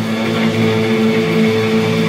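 Live rock band: electric guitar and bass guitar ringing out sustained, droning notes, with a higher held note coming in just after the start.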